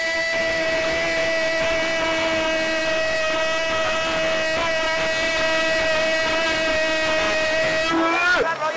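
A football commentator's drawn-out goal cry, 'goooool', shouted as one long unbroken note held at a steady high pitch, bending away only at the very end.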